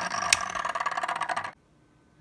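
DIY magnetic stir plate built from a 120 mm computer case fan, running with a steady hum and a fast rattle as the stir bar spins in a small glass vial of water. A sharp click comes about a third of a second in, and the sound cuts off abruptly about one and a half seconds in.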